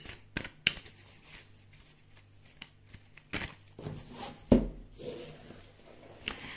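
Tarot cards being handled and drawn from the deck: a few short card clicks and snaps, then a louder knock with a low thump about four and a half seconds in.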